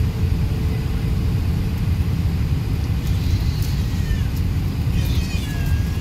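Airbus A380 on the ground heard from inside the passenger cabin: a loud, steady low rumble of engines and rolling. Faint high, falling squeals sound over it in the second half.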